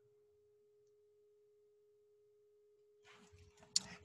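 Near silence apart from a faint steady tone at one pitch. A faint rustle and a click come in the last second.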